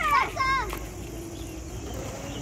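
A child's high-pitched voice calls out in the first second with no clear words, then gives way to a faint steady hum.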